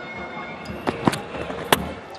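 A few sharp knocks over stadium crowd noise. The loudest comes near the end: a cricket ball, bowled as a bouncer, striking the batsman's helmet grille hard.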